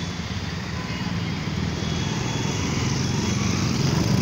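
Busy city street traffic: a steady rumble of passing vehicle engines that grows louder toward the end.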